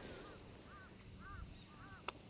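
A bird calling faintly in the distance: a run of short calls that rise and fall in pitch, about two a second.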